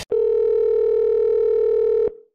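Telephone calling tone: one steady electronic tone, held for about two seconds and then cut off.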